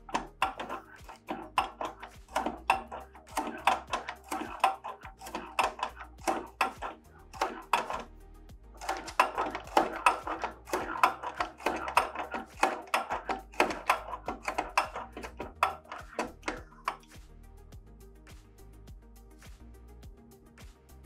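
Hand-cranked finger punch cutting fingers into a conveyor belt end: a fast run of sharp clicks, several a second, as the blade strokes and the table indexes. The clicks stop about three seconds before the end. Background music plays throughout.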